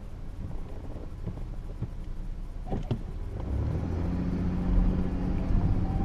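Car engine rumble heard from inside the cabin, with a few sharp clicks about halfway through. After that the engine note becomes a louder, steady low hum.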